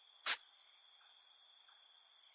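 Steady, faint background chirring of crickets as ambience. About a quarter second in there is a single short, sharp hiss-like burst.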